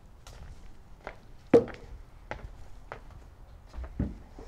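Footsteps on a wooden floor, about six steps at a walking pace, with one louder knock about one and a half seconds in.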